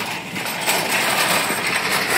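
Wire shopping cart rolling across asphalt, its casters and metal basket rattling continuously.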